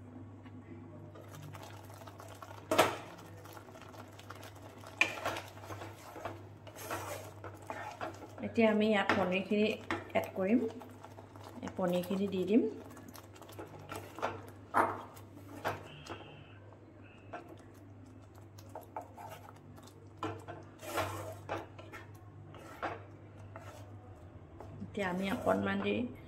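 Kitchen utensil clatter: a glass pot lid lifted off and set down, a spoon knocking paneer cubes from a glass bowl into a steel pot, and a spatula scraping in thick gravy. These are sharp clacks and knocks, the loudest about three seconds in, over a steady low hum.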